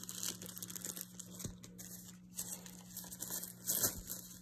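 Rustling and crinkling of a small drawstring pouch and packaging being handled as a trimmer's charging dock is taken out of it, with a louder rustle near the end. A faint steady hum runs underneath.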